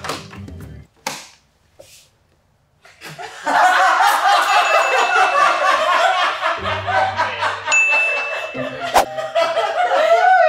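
A brief sound, then a pause, then from about three and a half seconds in, loud laughter over a comedic music cue, with a bright ding near the end.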